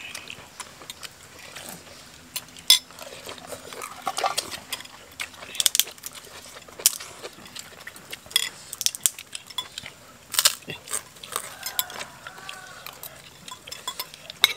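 Spoons clinking and scraping against soup bowls as several people eat soto babat (tripe soup), in many short irregular clicks.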